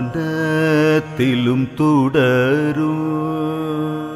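A man singing a Malayalam devotional light song, gliding between ornamented vowel notes, then holding one long note that fades near the end.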